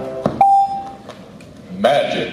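Music cuts off just after the start, then a single steady electronic beep lasting about half a second: the filmstrip soundtrack's cue tone to advance to the next frame.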